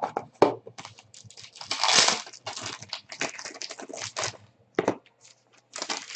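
Clear plastic wrapping crinkling and tearing as it is peeled open by hand from around a trading card. It makes an irregular run of crackles, loudest about two seconds in.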